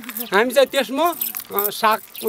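A man speaking with animated, rising and falling intonation. His words are the main sound, with only brief pauses.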